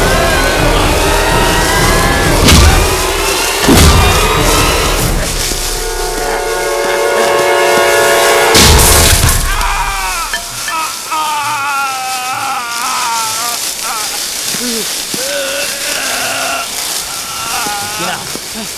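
Dramatic film background music with sudden loud hits about two and a half, four and eight and a half seconds in, and a held chord in the middle. After about ten seconds come wavering, sliding high tones.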